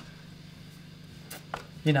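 Low, steady mains hum from the guitar amplifier rig sitting idle, with one sharp click about a second and a third in. A man starts speaking at the very end.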